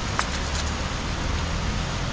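Steady rushing of river water, with a low rumble underneath and a faint click about a fifth of a second in.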